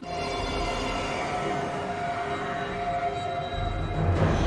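Tense horror-film score of sustained held tones over the low rumble of an approaching bus; the rumble swells near the end.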